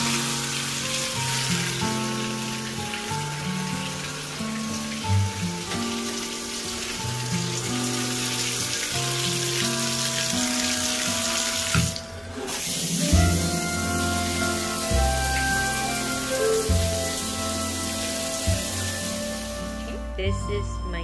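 Water running from a bathtub tap as the single-lever shower valve is turned, with background music playing over it. There is a brief break about twelve seconds in.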